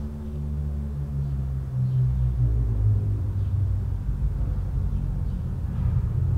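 A low, steady droning hum made of several deep tones, which shifts in pitch and gets slightly louder about two seconds in.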